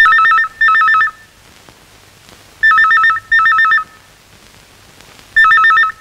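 Electronic telephone ringer warbling in double rings, each ring a rapid alternation between two tones. It sounds three times, a pair of short bursts about every two and a half seconds.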